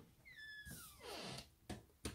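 A light switch clicked on near the end, after a short high squeak that falls in pitch and some soft rustling.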